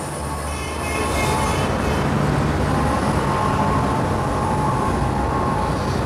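Steady mechanical rumble with a faint hum, even in level.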